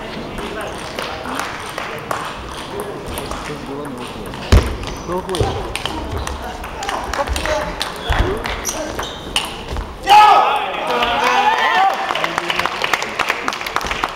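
Table tennis rally: the ball clicks sharply off bats and table in quick, irregular ticks. About ten seconds in, when the point ends, spectators break into a louder burst of shouting and cheering, over steady crowd chatter in the hall.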